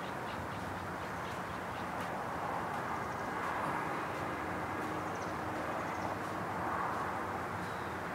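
Steady outdoor city ambience: a constant wash of distant traffic, with faint scattered light ticks.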